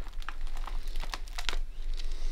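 A paper book being picked up and opened, its pages and cover rustling in a quick run of short, irregular crackles.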